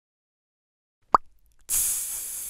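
Intro logo sound effects: silence, then a single short pop about a second in, followed shortly after by an abrupt hiss-like whoosh that keeps going.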